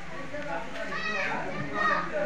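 An infant cooing and babbling: one drawn-out vocal sound about a second in and a shorter one near the end, the sounds of a contented baby.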